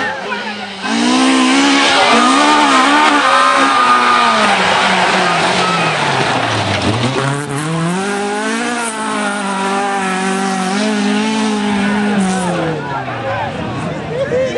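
Drift car engine revving hard over tyre squeal. The engine note sinks steeply about five to seven seconds in, climbs back and holds high, then drops again near the end.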